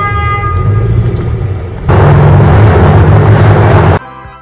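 City traffic heard from inside a moving taxi: a steady low engine and road rumble, with a car horn tone fading out over the first second and a half. About two seconds in a louder rush of road noise comes up, then cuts off suddenly.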